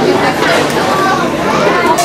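Several people's voices talking over one another in a busy buffet, with no single speaker clear, over a steady low hum.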